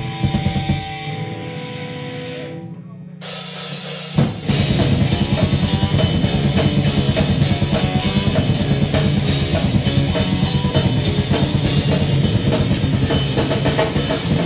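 Live band of electric guitars, bass and drum kit starting a new song: a few seconds of held ringing notes over a sustained low bass note, a brief drop, then the full band comes in about four seconds in with fast, driving drumming.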